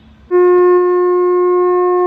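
Conch shell (shankha) blown in Hindu worship: one long, loud, steady note starting about a third of a second in and held.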